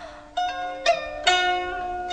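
Interlude music on a plucked, zither-like string instrument in a traditional Chinese style: three notes plucked in turn, each left to ring on.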